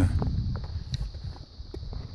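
Footsteps on a dirt trail: a few light, irregular steps and scuffs over a low rumble.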